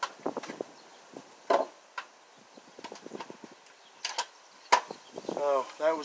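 Handling of a cordless drill and its battery pack after the battery has died: a scattered series of sharp plastic clicks and knocks, with quiet between them.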